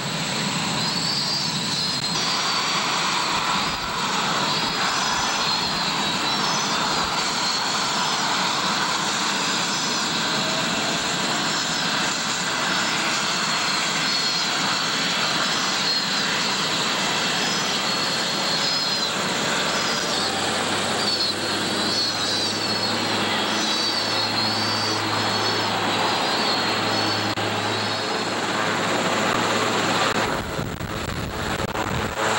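Coast Guard helicopter running on the ground with its rotor turning: a loud, steady turbine rush with a thin high whine. A low hum comes and goes in the last third.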